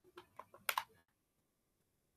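A quick run of about half a dozen keystrokes on a computer keyboard, all within the first second, then quiet.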